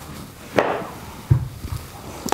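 Yoga bricks knocking as they are set down under the sacrum: a brief rustle, then one sharp knock a little past the middle, followed by a couple of softer taps.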